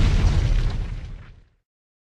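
Explosion: a loud, deep, noisy blast with crackle, fading away and ending about a second and a half in.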